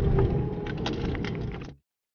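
Car cabin noise while driving slowly on a street: a low engine and tyre rumble with a few light knocks a little under a second in, getting quieter and then cutting off abruptly near the end.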